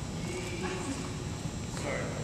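Indistinct background voices and low murmur in a gymnasium, with no single sound standing out.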